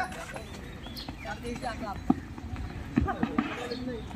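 Voices of people calling out during an outdoor kho-kho game, with a few sharp knocks about two and three seconds in.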